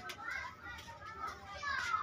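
Faint high-pitched children's voices in the background, heard twice.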